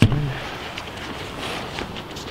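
Steady outdoor rush of wind, with the last syllable of a man's voice at the very start.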